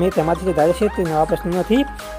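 A person's voice talking over background music with steady, repeating low bass notes.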